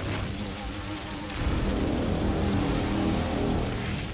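Sci-fi sound effect of a large spaceship approaching: a deep engine rumble that swells up about a second and a half in, over the drama's music score.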